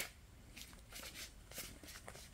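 Faint rustle of a tarot deck being handled and shuffled in the hands, with a few soft card flicks spread through.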